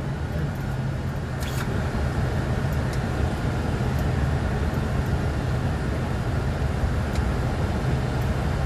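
Steady flight-deck noise of a Boeing 747-400 on short final: an even low rumble of airflow and engines. A single sharp click comes about a second and a half in.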